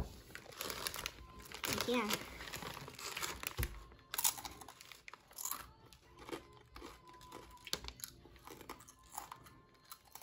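Plastic Doritos chip bag crinkling and tortilla chips crunching as they are chewed, in short scattered crackles.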